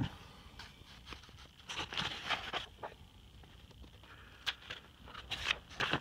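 Pages of a paper repair manual being flipped and handled, heard as a few soft rustles and light taps in two short clusters, about two seconds in and again near the end.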